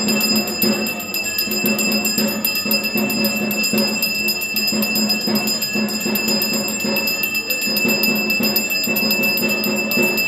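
Puja hand bell rung continuously in a fast, even ringing, with a steady high ring that does not die away, over a low pulsing sound from the worship.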